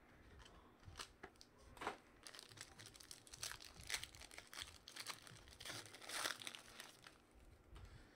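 Faint crinkling and tearing of a trading-card pack's clear plastic wrapper being opened and handled: a string of soft crackles and rustles with a few sharper clicks.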